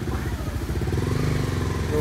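A motorcycle engine running nearby: a low, steady throb that rises slightly in pitch and loudness through the middle.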